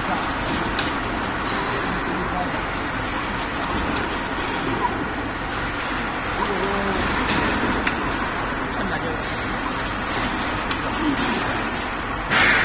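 Donut conveyor fryer running: a steady hiss of dough frying in oil mixed with machine noise, with a few light clicks. Voices murmur faintly in the background.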